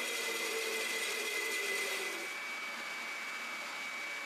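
Steady hum of a woodshop power tool motor running with nothing being cut. About two seconds in the hum changes and turns slightly quieter and duller.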